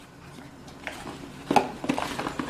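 A plastic lid being pressed onto a plastic food-storage container, with quiet handling and then two sharp clicks near the end.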